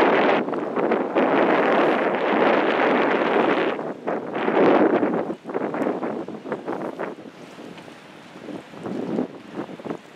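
Wind buffeting the microphone in strong, uneven gusts for the first five or six seconds, then easing into weaker, intermittent gusts.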